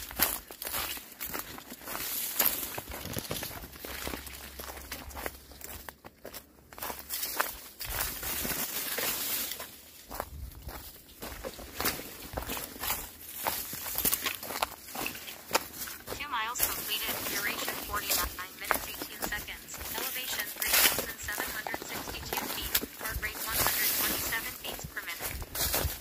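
A hiker's footsteps going downhill on a narrow dirt trail strewn with dry leaves, in an irregular run of steps.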